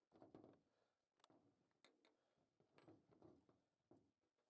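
Near silence, with a few faint clicks and taps from a screwdriver working the chainsaw's chain-tension adjuster.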